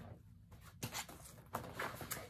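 Faint handling noise in a quiet small room, with a couple of soft clicks a little under a second in and a brief rustle near the end.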